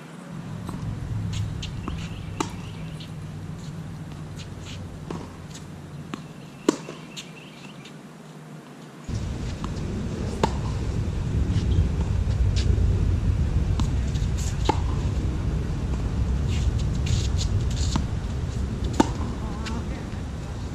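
Tennis ball struck back and forth by rackets in a rally on a hard court: sharp pops every couple of seconds, near and far. Under them runs a low rumble that turns louder about nine seconds in.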